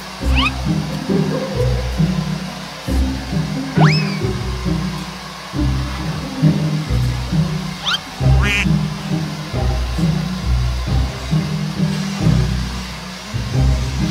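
Background music with a steady, bouncy bass beat, with a few short rising whistle-like glides laid over it, one near the start, one about four seconds in and one about eight seconds in.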